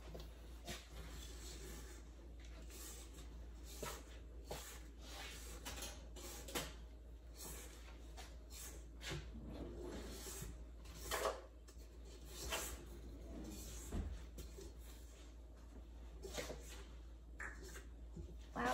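A rubber spatula scraping thick cookie dough off a mixer paddle and against a stainless steel mixing bowl, in irregular soft scrapes and light taps.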